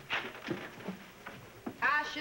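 Studio audience laughter in short bursts, trailing off. Near the end a man's voice starts a long, drawn-out "oh".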